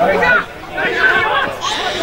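Several voices shouting and talking over one another close by, with a brief lull about half a second in.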